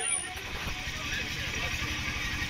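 An engine running steadily, a low rapid rumble, with a faint steady hum over it.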